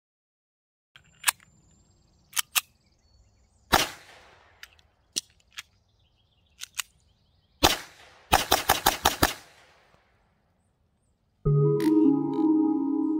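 Shots from a Walther P22 .22 pistol. Single shots come at uneven intervals, some sharp and some fainter, and then a rapid string of about eight shots in about a second. The audio cuts to dead silence between shots because the shots are muting the microphone.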